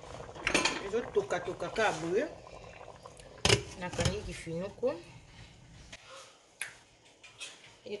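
A glass lid set down onto a stainless steel cooking pot with a sharp clink about three and a half seconds in, with a woman talking around it and a smaller click near the end.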